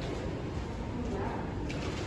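Steady shop room noise with faint voices in the background, one briefly audible about a second in.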